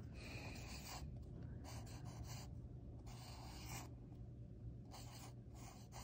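Black Sharpie felt-tip marker drawing on paper: several faint, separate strokes.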